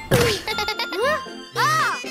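Cartoon sound effects over children's background music: a thud with a quick falling tone just after the start as a character falls over, then a tinkling jingle and short rising-and-falling vocal sounds.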